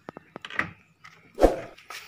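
Handling noises by a car's front door: a few light clicks, then one loud dull thump about one and a half seconds in.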